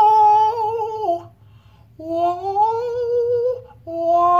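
A man singing held 'oh' vocal warm-up notes. The first note slides down and stops about a second in. After a short gap a second note starts and rises slowly with vibrato, and a third note begins near the end.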